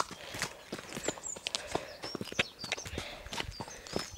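A pony's hooves and a person's footsteps on a dirt track as the pony is led at a walk, irregular steps several a second.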